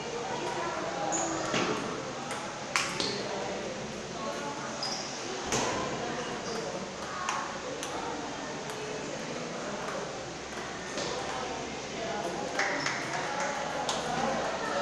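Table tennis ball in a rally, making sharp clicks at irregular intervals as it strikes the paddles and the table.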